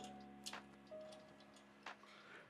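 Near silence with two faint clicks, about half a second in and near the end, from a metal spool-holder bracket and its T-nuts being handled against an aluminium extrusion.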